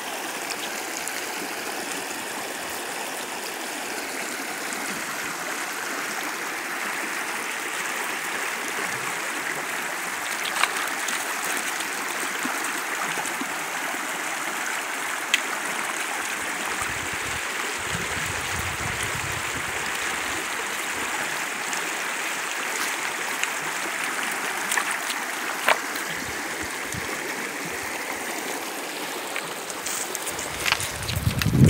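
A shallow rocky creek running over stones, a steady rushing of water throughout. A few sharp clicks stand out, and a low rumble comes in for a few seconds past the middle.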